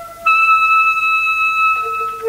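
Alto saxophone holding a long, steady high note that enters about a quarter second in, then moving to a lower held note near the end.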